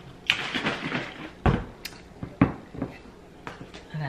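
Glass bottles being handled and set down on a kitchen counter: a short rustle, then a few sharp knocks and clicks.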